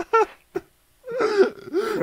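A person's voice: the end of a laugh, a short pause of about half a second, then a drawn-out vocal sound leading into speech.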